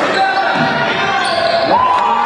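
Basketball game sound in a gym hall: crowd voices under a ball bouncing on the hardwood court, with a short rising sneaker squeak near the end.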